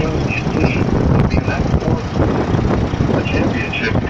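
Steady low rumble of a vehicle driving on a city street, heard from inside the vehicle, with a radio talk-show voice faintly under it.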